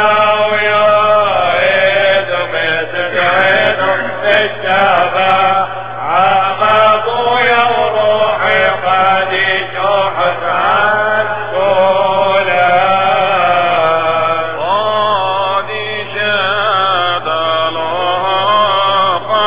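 A man chanting Syriac Catholic liturgy solo, in long, continuous, ornamented lines that glide between notes.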